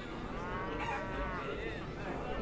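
A cow mooing: one drawn-out call that rises and falls over about a second, with a short tail near the end, over a steady low background rumble.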